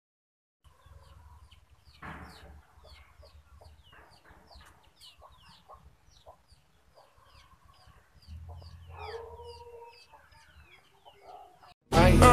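Faint outdoor birdsong: short high chirps repeating several times a second, with a longer, lower chicken call about eight seconds in.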